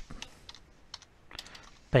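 Computer keyboard being typed on: a scattered, irregular run of light key clicks, as a name is entered.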